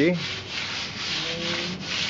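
Steady rough rubbing against a hard surface, with quick repeated strokes.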